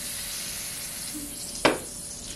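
A can of Taihu beer being opened: a steady hiss of escaping gas as the pull tab is eased up, then one sharp click of the tab about one and a half seconds in.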